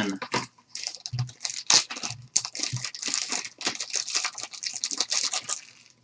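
Plastic shrink wrap on a hockey card pack crinkling and tearing in irregular crackles as the pack is torn open by hand, fading out near the end.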